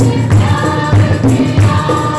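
Worship song with group singing over hand drums: a set of three conga-style drums played with the hands in a steady beat.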